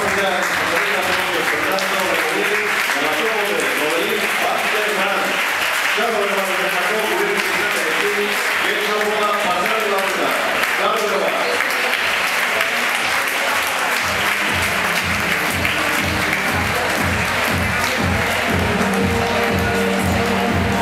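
Audience applauding over music, with a steady low beat coming in about two-thirds of the way through.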